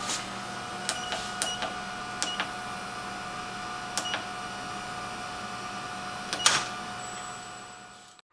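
Control-panel buttons of a Thermo IEC CL31R Multispeed centrifuge being pressed to program a run: a series of sharp clicks, several followed by a short high beep, with the loudest click about six and a half seconds in. A steady hum runs underneath, and the sound fades out near the end.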